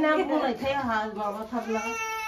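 Six-month-old baby crying, the cry turning into a long, held wail near the end, with women's voices around it.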